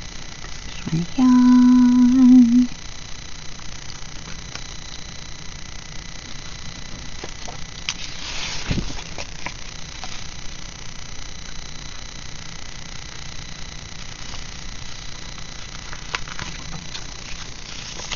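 A woman hums one short held note about a second in, wavering slightly as it ends. After it come soft paper sounds of sticker sheets being handled, with a brief rustle near the middle.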